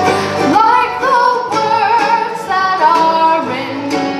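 Live bluegrass band playing: a woman sings a held, wavering melody over acoustic guitar, mandolin, banjo and upright bass.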